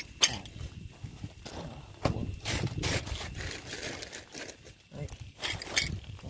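Handling noise: hands rustling and moving gear on a plastic tarp, with a sharp click about a quarter second in and bursts of rustling around two seconds in and near the end.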